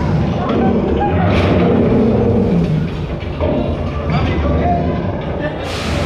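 Indistinct voices and music over a steady low rumble.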